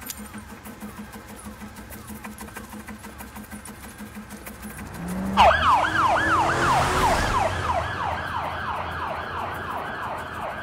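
Police car siren in a fast yelp, faint at first, then suddenly loud about five seconds in and slowly fading.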